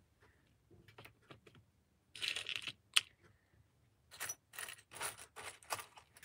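Small craft pieces and plastic zip packets being handled on a table: light clicks, crinkly plastic rustles, one sharp click about three seconds in, then a quick run of short rustles near the end.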